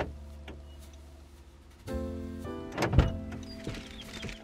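Car door sounds from inside the cabin: a light latch click at the start, then a sharp, louder clunk about three seconds in as the door is opened, with a few softer knocks after it.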